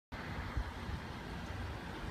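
Steady outdoor background noise: a low rumble under a hiss, with a soft low bump just over half a second in.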